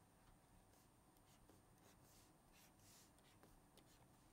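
Near silence with faint scratching and tapping strokes of a stylus writing and underlining on a tablet.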